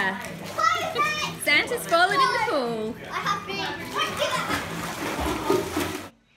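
Children's high voices shouting and calling out as they play in a swimming pool, with water splashing.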